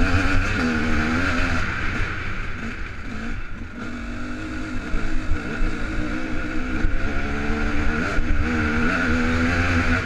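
Enduro dirt bike engine under way on a trail, the revs rising and falling with the throttle. It eases off briefly about three seconds in, then picks back up.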